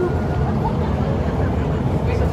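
Steady low wind rumble on the phone's microphone, with faint chatter of other people in the background.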